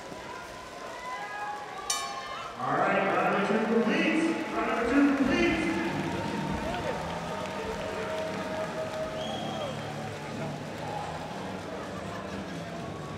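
A single ringing strike of the end-of-round bell about two seconds in, followed at once by the boxing crowd cheering and shouting, which then settles into steady crowd chatter.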